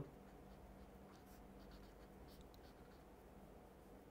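Felt-tip marker writing on paper: faint scratchy strokes over near-silent room tone with a faint steady hum.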